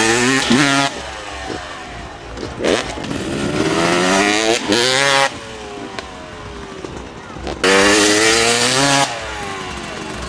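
Motocross dirt bike engine revving in loud bursts, its pitch sweeping up and down. Hard throttle right at the start, climbing revs near the middle, and another loud full-throttle burst near the end.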